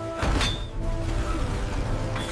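Cartoon sound effect of falling metal junk: a sudden crash about a quarter second in, followed by a low rumble, over background music.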